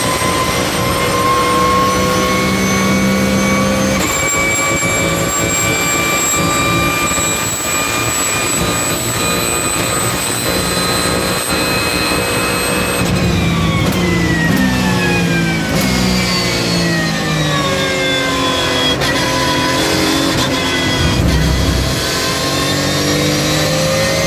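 Porsche 911 GT3 Cup's naturally aspirated flat-six engine, heard loud from inside the cockpit, pulling hard with its pitch climbing slowly for about thirteen seconds. Then the pitch falls in several steps as the car brakes and downshifts, and it climbs again near the end as the car accelerates out.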